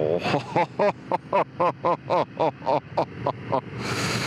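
A man laughing in a long run of short rhythmic bursts, about four a second, over the steady noise of the motorcycle ride. A burst of hissing noise comes right at the end.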